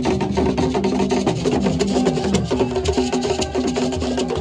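Live Ghanaian traditional drumming and percussion, with a sharp clacking beat struck over and over, hand drums underneath and a pitched melody line over it.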